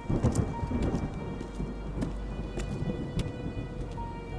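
A roll of thunder that swells sharply at the start, peaks within the first half second and rumbles on through the rest, over a steady held music drone.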